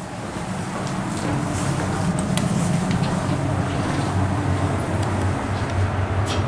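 KONE traction elevator cab noise swelling over the first second or so into a steady low hum with a rush of air, as the car gets under way. A few light clicks come about two seconds in.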